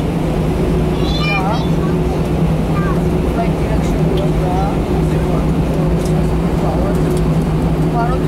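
Airbus A319 cabin noise while the jet taxis: the engines' steady hum and low rumble, with two constant tones. Passengers' voices can be heard faintly over it now and then.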